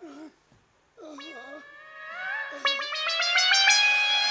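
Stage accompaniment for a comic moment: a short cry, then a held musical chord that slides slowly upward in pitch. About two and a half seconds in, a quick run of drum strokes joins it, about six a second, growing louder toward the end.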